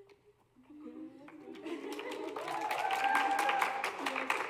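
A brief hush, then scattered hand clapping that builds into audience applause from about a second and a half in, with voices, including one long held call, over it.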